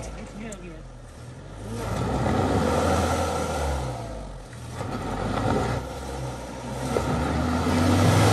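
SUV engine revving in repeated surges as the vehicle, stuck in mud, is worked free, with people's voices over it.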